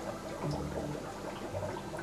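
Aquarium water sloshing and dripping as a fish net is swept through a tank and lifted out full of fish.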